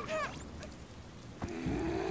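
An animated character's short strained vocal cries, then a sharp knock about a second and a half in, followed by a low held grunt.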